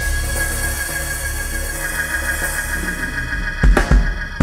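Church band music under the preaching: held keyboard chords over a steady bass line. A couple of sharp drum hits come near the end.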